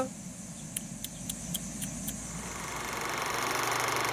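Faint outdoor background with a few light clicks. From about halfway, a steady mechanical whirr with a fast, even rattle fades in and grows louder: the film-projector sound effect of an old-film-style end title.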